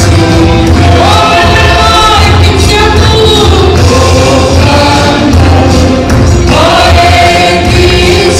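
Church congregation and worship team singing a Mizo hymn together with instrumental accompaniment, loud and continuous.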